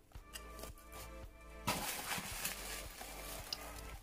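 Background music playing softly, with a soft rustle of fake spider-web cotton being pulled and handled over a cardboard box from about a second and a half in.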